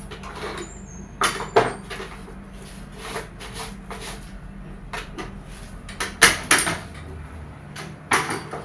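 Long-handled straw broom sweeping a tiled floor: a series of brisk swishing strokes, the loudest about six seconds in, over a steady low hum.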